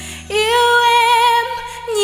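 A woman singing live into a handheld microphone: one long held note that comes in about a quarter second in, then breaks off near the end as the next note begins, over soft sustained accompaniment.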